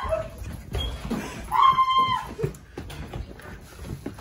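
A woman's high, drawn-out wailing cry about one and a half seconds in, held for under a second on one pitch and falling away at the end, as she breaks down at the paternity result. Hurried footsteps and shuffling of people rushing along run underneath.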